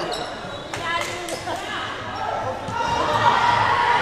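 Basketball bouncing a few times on a wooden gym floor, short knocks in the first half or so, over voices of players and onlookers.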